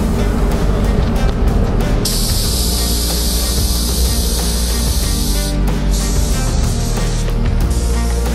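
Sagola Mini Xtreme mini spray gun hissing as it sprays clear coat at 2.2 bar, in one pass of about three and a half seconds starting two seconds in, over background music.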